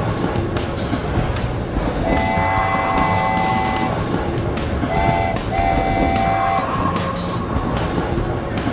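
Cartoon steam locomotive whistle sounding three times: one long blast of several tones together about two seconds in, then a short blast and a longer one a few seconds later, over the steady running noise of the train.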